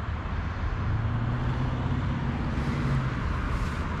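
Road traffic running steadily, with one vehicle's engine hum rising out of it for about two seconds in the middle.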